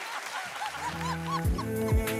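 Background music entering with sustained notes and two quick sliding drops in pitch, over a short run of rapid yelping calls.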